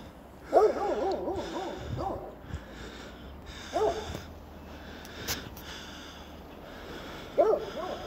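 Footsteps in snow at a steady walking pace. Over them, an animal in the distance calls: a quick run of calls about half a second in, then a single call near the middle and another near the end.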